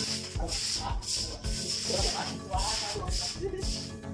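Repeated strokes of scrubbing on a wet floor, a hissy rasp every half second or so, under background music with a steady beat.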